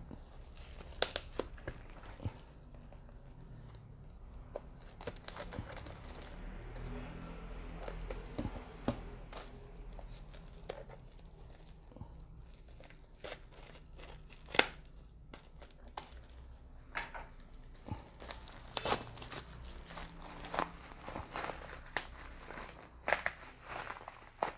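Plastic parcel wrapping crinkling and rustling as it is cut open with a utility knife and scissors and torn apart, with scattered sharp clicks and snips. The sharpest click comes about midway.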